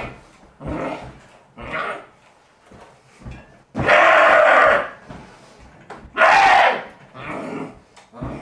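A man making loud, animal-like growling cries in bursts. The two longest and loudest come about four and six seconds in, with shorter, quieter ones between them.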